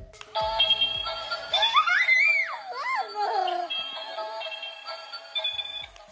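Tinny electronic tune from a toddler's butterfly bubble-wand toy, playing steady high notes that cut off near the end. A high voice slides up and down over it about two to three seconds in.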